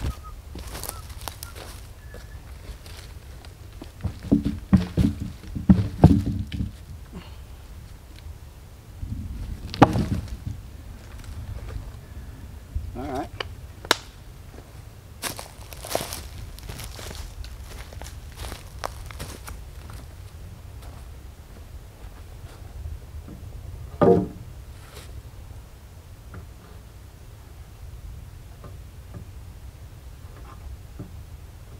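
Heavy oak log being shifted on wooden timbers, giving a run of dull wooden thumps, then a sharp knock and scattered lighter knocks and steps on dry leaves. A louder wooden knock comes near the end as a board is laid on the log. A steady low rumble runs underneath.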